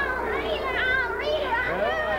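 Excited, high-pitched voices, a child's among them, calling out over one another.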